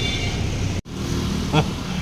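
Steady low hum of vehicle engines and street traffic, broken by a brief dropout just under a second in where the recording cuts.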